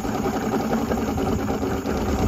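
Mercury Black Max 135 V6 two-stroke outboard idling steadily, warmed up, with its cowling off.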